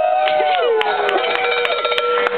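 Several female voices singing long, held notes that slide up and down and overlap, with a few sharp clicks.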